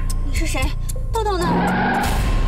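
Film soundtrack: music over a car's tyres squealing in a skid, with falling squeals near the middle.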